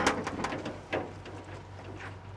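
Light metallic clicks and a short rattle as a wrought-iron gate is unlatched and pulled open, over a low steady hum.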